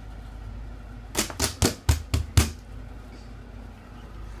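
Six quick slaps, about four a second, lasting just over a second: a baby's hands slapping in a shallow inflatable bath.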